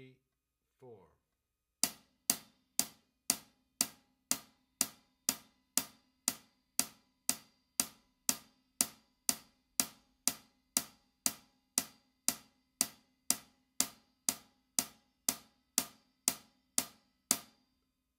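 Hi-hat cymbals struck with a drumstick in steady eighth notes, about two strokes a second, each stroke short and dying away quickly. The strokes begin about two seconds in and run for four bars of eight, stopping just before the end.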